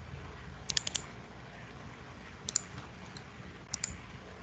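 Quick clicks from operating a computer, in small clusters of two to five: about a second in, halfway through, and near the end.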